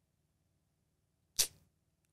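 Near silence, broken about one and a half seconds in by a single short, sharp sound.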